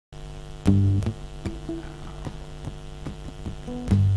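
Steady electrical mains hum through the stage sound system, with a loud low note about half a second in and soft clicks in an even beat, about two and a half a second, as the band counts into the song.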